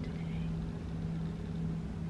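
A steady low hum from a running motor or appliance, one even tone that does not change.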